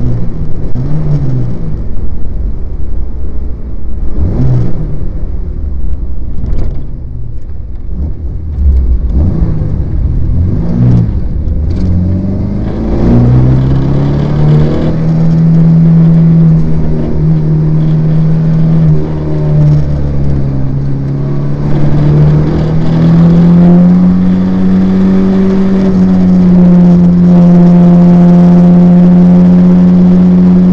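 MGB's four-cylinder engine heard from the open cockpit with wind buffeting the microphone: at first mostly wind noise with a few brief swells in engine pitch, then from about 13 seconds in the engine runs at high, fairly steady revs, climbing a little higher about 23 seconds in and holding there.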